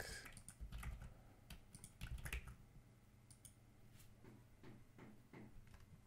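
Faint computer keyboard typing and clicks: short, irregular taps as values are entered.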